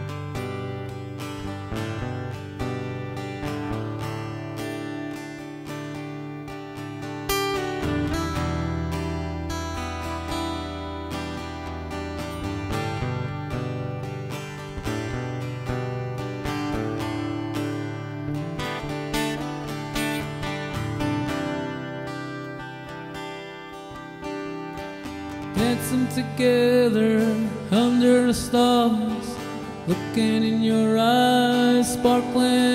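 Acoustic guitar strummed in a steady rhythm as the intro to a song. A man's singing voice comes in near the end.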